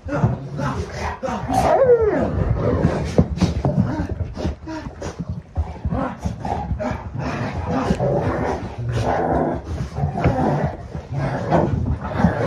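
Several Rottweilers play-wrestling on carpet: dogs barking and crying out amid constant scuffling of paws and bumping bodies, with a drawn-out falling cry about two seconds in.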